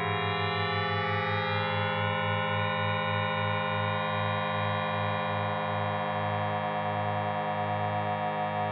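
Make Noise Telharmonic additive-synthesis module sounding a sustained electronic drone built of many stacked overtones, its upper partials shifting as the knobs are turned. Under it a low pulsing beat slows from about five beats a second to under two.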